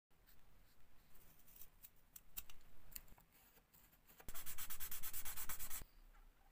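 A fine-tip marker scratches faintly on balsa wood as an outline is traced. Then, for about a second and a half, sandpaper rubs on balsa in rapid, even strokes, about nine a second, much louder, and stops abruptly.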